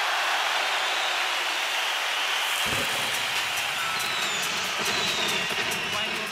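A steady rushing noise without music, with faint low rumbling and a few faint gliding whistle-like tones joining it past the middle.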